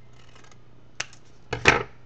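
Scissors cutting envelope paper: a single sharp snip about halfway, then a louder cluster of snips and paper crackle near the end as the excess is trimmed off.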